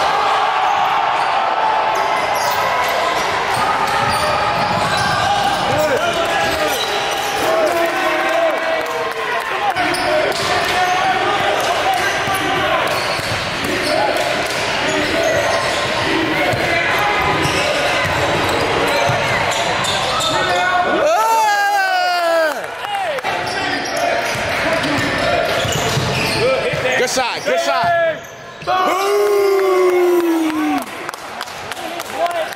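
A basketball being dribbled on a hardwood gym floor during play, with indistinct shouting and chatter from players and onlookers echoing around the gym. A few high squeals come about two-thirds of the way in and again near the end.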